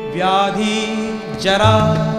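Indian devotional song: a voice sings two wavering, ornamented phrases, the second starting about halfway through. A steady harmonium drone and sitar and tabla accompaniment play underneath.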